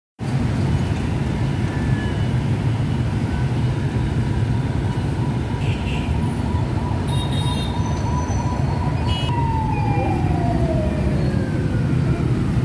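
Steady low rumble of city street traffic. Over it a single steady high siren-like tone holds, then glides down in pitch over the last three seconds.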